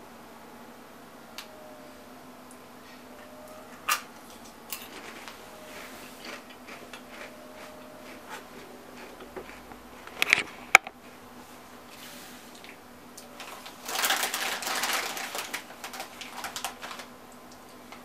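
A few scattered clicks and taps, then, about 14 s in, a foil crisp packet crinkling loudly as it is pulled open and rustled for about three seconds. A faint steady hum lies underneath.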